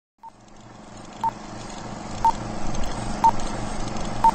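Film-leader countdown sound effect: a short high beep once a second, four in all, over a low hum and noise that grows steadily louder.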